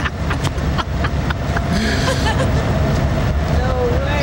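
Police car engine idling, a steady low rumble, with several sharp clicks in the first second and a half and a short hiss about two seconds in.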